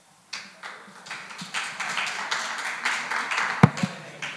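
Audience applause that starts a moment in, builds, and thins out near the end, with one sharp thump near the end.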